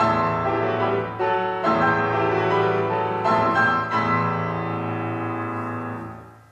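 Steinway & Sons grand piano played solo: chords struck several times, the last one held and ringing as it begins to fade near the end.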